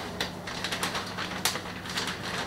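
Light clicks and crinkles of cheese packaging being handled and put aside on a kitchen counter, three sharper clicks among them, over a steady low hum.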